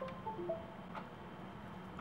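Faint computer chime: a few short electronic tones stepping down in pitch in quick succession. Typical of the Windows device-disconnect sound as a rebooting phone drops its USB connection.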